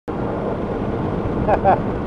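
Steady engine and rushing wind noise of an open-cockpit motorized hang glider trike in flight, heard from the pilot's seat with wind buffeting the microphone. A brief snatch of the pilot's voice comes about one and a half seconds in.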